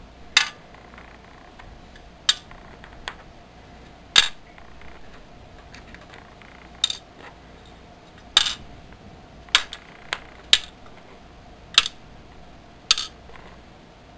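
Metal screws and nuts dropped one at a time into containers of water, each landing with a short, sharp clink: about ten at uneven intervals.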